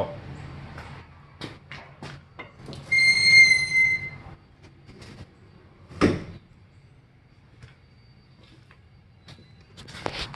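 A high, steady squeak lasting about a second, then a single sharp knock about six seconds in, with a few light clicks and handling noise around them, as of rusty car body metal being handled.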